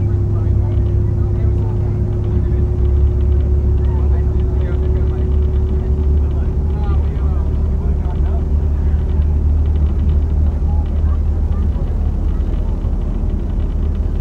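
Steady low rumble of a car driving, heard from inside the cabin, with a constant hum over it and faint, indistinct voices.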